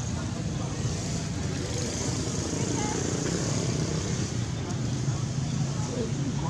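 Steady low rumbling background noise with a fainter hiss above it, unchanging throughout, with no distinct event standing out.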